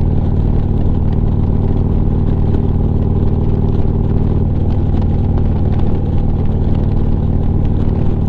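Harley-Davidson Street Glide's V-twin engine running steadily at cruising speed, with wind and road noise.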